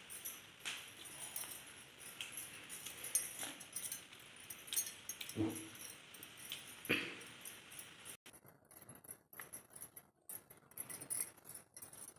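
Quiet handling noise as green chillies are stemmed by hand on a stone counter: light clicks and rustles, with metal bangles clinking now and then. Two short, louder sounds come about five and a half and seven seconds in.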